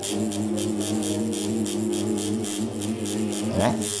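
Electric tattoo machine buzzing steadily as its needle works black ink into synthetic practice skin.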